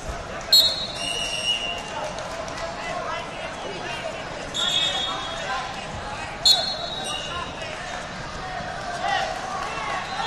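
Three short referee whistle blasts, about half a second in, at about four and a half seconds and at about six and a half seconds, over the steady chatter of a crowd in a large hall.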